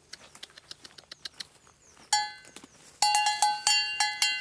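A cow's collar bell clanking as the cow moves. A single ringing strike comes about two seconds in, and a run of clanks follows in the last second, after faint scattered clicks at the start.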